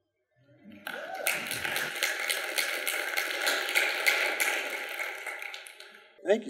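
Congregation applauding, starting suddenly about a second in and dying away near the end.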